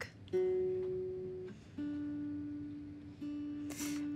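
Guitar notes picked one at a time and left to ring out: a higher note near the start, then a lower note struck twice, each fading away.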